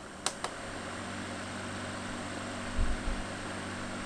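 Seekr Sirocco II 12-volt fan: two sharp clicks of its control, then the fan running at its second speed with a steady hum and airflow hiss. A dull low bump comes about three seconds in.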